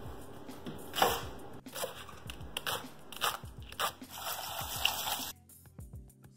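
Chef's knife cutting through a leek on a wooden cutting board: a series of irregular sharp cuts, the loudest about a second in, stopping a little after five seconds. Background music plays underneath.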